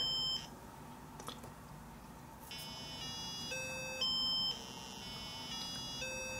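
A small speaker driven by an Arduino Uno's pin gives faint, buzzy square-wave beeps of the note C. The tone steps up an octave about every half second (65, 130, 260, 520 and 1040 hertz), then drops back to the low C. The tones break off just after the start and resume about two seconds later, consistent with the board resetting as the serial monitor opens.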